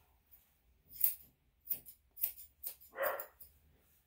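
Curved grooming scissors cutting a dog's long tail fur: a handful of short, crisp snips spread over a few seconds.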